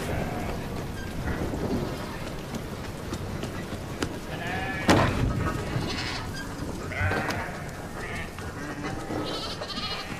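Sheep bleating several times in a barn, over the steady hiss of rain. A single sharp knock just before the middle is the loudest sound.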